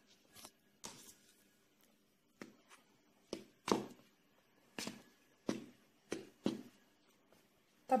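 Hand rubbing oil into flour in a bowl: about ten short, soft rustling scrapes at irregular intervals, the fingers working the fat in so that it does not form clumps.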